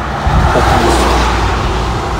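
A car passing close by on the road: a swell of tyre and engine noise that builds through the first second or so and then eases, over a steady low traffic rumble.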